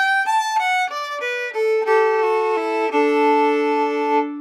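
Fiddle played with the bow, running a line of notes stepwise downward. From about a second and a half in, the open A string is left ringing steadily while the notes below it walk down on the D string, ending on a held two-note chord.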